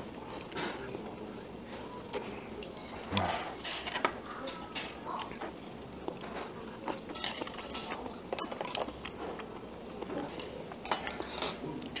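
Metal spoons and chopsticks clinking and tapping against earthenware gukbap bowls and side-dish plates while eating, in scattered light clicks through a low room murmur.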